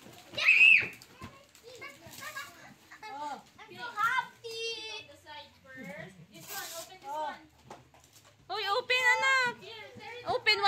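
Young children chattering and exclaiming over each other in short high-pitched bursts, with a loud high shout about half a second in.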